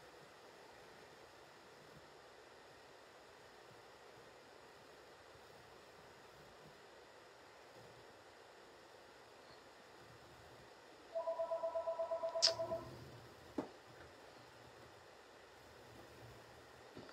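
Near silence for most of the stretch, then, about eleven seconds in, a quick run of electronic beeps: two steady tones pulsing about seven times a second for a second and a half, followed by a sharp click and a second, fainter click.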